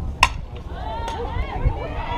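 A single sharp crack of a bat hitting a softball, the loudest sound, just after the start. Several voices then shout and cheer.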